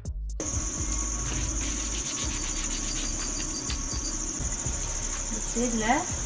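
A steady high-pitched chorus of insects chirping, coming in about half a second in as music cuts off, with faint clicks beneath and a voice briefly near the end.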